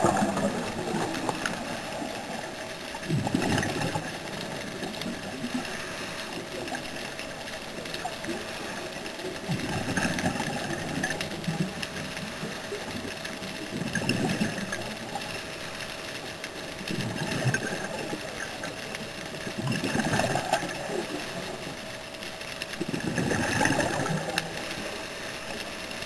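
Scuba diver's regulator breathing heard underwater: bubbly exhalation bursts swell and fade every three to four seconds over a steady hum.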